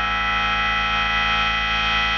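Electronic music: a synthesizer chord with many overtones held steadily through, over a fast, even low bass pulse.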